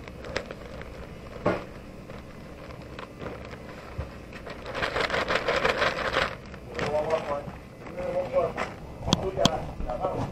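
A plastic bag of fishing groundbait crinkling as it is handled, loudest for about a second and a half in the middle, followed by a faint voice and a couple of sharp clicks near the end.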